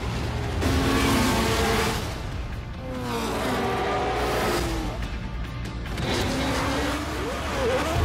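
Formula One race cars running at high revs, their engine pitch falling as they pass about three seconds in and rising again near the end, mixed under trailer music.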